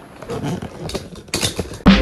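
Bedding rustling with a short low vocal sound from a person in bed, then loud electronic music with a steady beat cuts in abruptly near the end.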